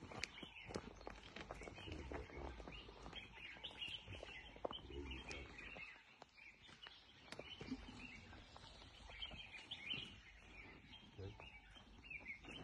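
Faint outdoor bush ambience with scattered bird chirps and a few small clicks.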